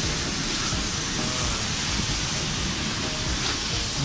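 Steady hiss with a low rumble underneath, even throughout, with no distinct knocks or clicks.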